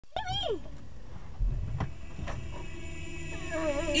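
A single short cat meow near the start, rising and then falling in pitch, followed by a couple of faint clicks; a voice starts singing just before the end.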